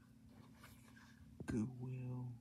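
Plastic DVD case being handled and turned over, with faint rustling and a sharp click about one and a half seconds in. A brief low voice sound follows.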